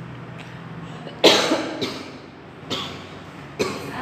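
A person coughing: one sharp cough about a second in, then two shorter coughs near the end.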